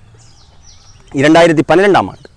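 A man speaking in Tamil, starting about halfway through after a short pause. During the pause, faint high bird chirps can be heard.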